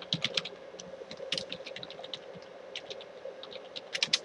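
Typing on a computer keyboard: an irregular run of quick key clicks as a short name is typed, thinning briefly around the middle.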